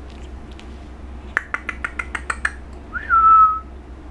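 A quick run of about eight sharp clicks, then a person whistling one short note that rises, dips and holds steady for about half a second, the loudest sound here.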